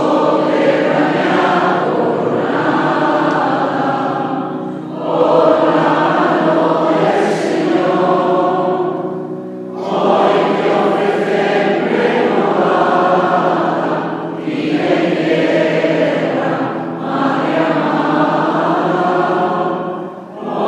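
Mixed choir of women's and men's voices singing a hymn in long phrases, with short breaks between them.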